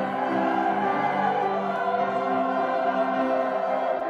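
A church choir singing in parts, accompanied by a small string ensemble, with held notes and the chord changing every second or so.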